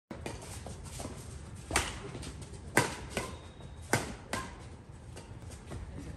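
Badminton rally: five sharp racket-on-shuttlecock hits over about three seconds, the three loudest about a second apart with softer ones between.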